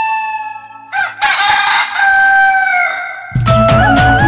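A flute note fades out, then a rooster crows once, a long call that drops in pitch at its end. The band comes in with drums and bass near the end.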